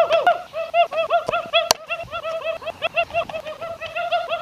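A high-pitched voice whooping over and over in quick short hoots, about four or five a second, each note rising and falling. A sharp click sounds partway through.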